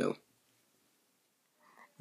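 Near silence: a spoken word trails off at the start, then room tone, with a faint short sound just before speech resumes near the end.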